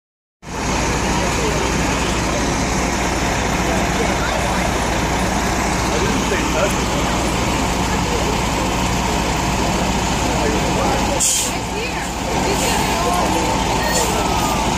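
Large diesel charter coach engine running steadily with a low rumble, as the bus sets off. About eleven seconds in there is a short burst of hiss.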